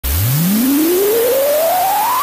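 Synthesized rising sweep for a logo intro: one pure tone gliding steadily upward from a low hum toward a high whistle, with a hiss of noise over it.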